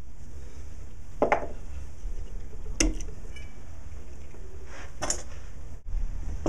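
A few light, separate metal clicks and clinks from small hand tools, cutting pliers and fine music wire being handled against a metal jeweler's saw frame, over a low steady hum.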